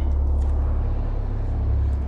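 A car driving, heard as a steady low engine and road rumble.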